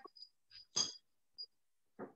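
A few faint clicks and one short knock a little under a second in, as engine parts are handled and moved on the bench.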